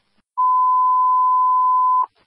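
Fire dispatch radio alert tone: one steady, pure beep, starting a moment in and held for about a second and a half before it cuts off. It is the attention tone that comes ahead of a dispatcher's announcement.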